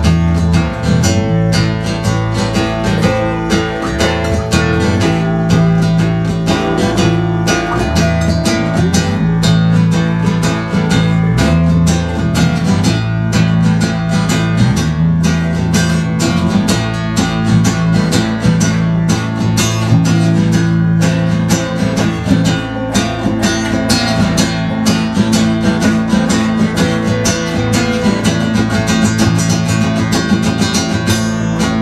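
A live band jamming: an acoustic guitar strummed in a fast, steady rhythm, together with an electric guitar and a bass guitar whose low notes change every second or two. An instrumental stretch with no singing.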